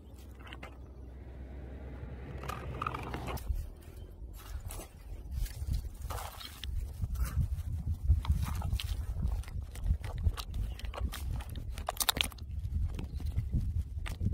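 Gloved hand handling a cut plastic bottle and the soil around green onions planted in it: scattered clicks, crackles and scrapes, loudest about eight and twelve seconds in, over a low rumble.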